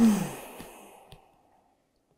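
A woman's deep, audible sighing exhale as she holds a yoga stretch. It starts with a voiced tone that falls in pitch and trails off as breath over about a second and a half.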